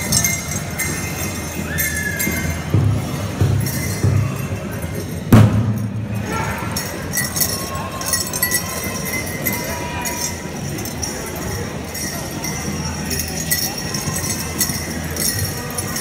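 Dancers' bells jingling irregularly over the chatter of a crowd in a gymnasium, with one loud thump about five seconds in.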